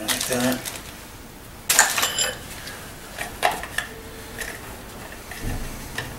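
Hand tools, including a hot glue gun, being handled in glue-pull dent repair: a few sharp clicks and clacks, the loudest about two seconds in and a duller knock near the end.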